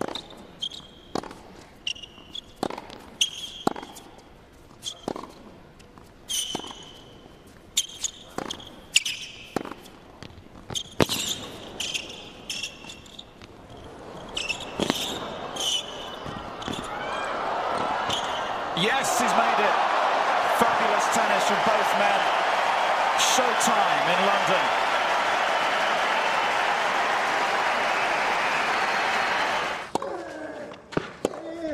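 Tennis rally on an indoor hard court: ball strikes and bounces about once a second, with shoes squeaking, for the first half. The crowd then rises into loud cheering and applause that holds for about ten seconds.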